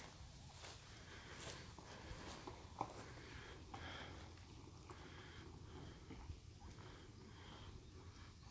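Near silence: faint outdoor background with a low rumble and a few soft clicks.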